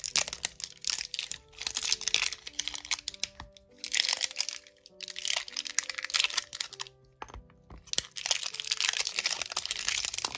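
Plastic packaging crinkling and crackling in several handling bursts a second or so long, as small pigment-powder jars are taken out of their set. Soft background music with held notes plays under it.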